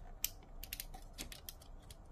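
Faint, scattered small clicks of hard plastic parts as the action figure's swappable hand is handled and seated on its arm, one sharper click about a quarter of a second in.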